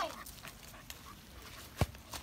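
Faint sounds of a dog moving about close by on grass, with one short, sharp thump near the end.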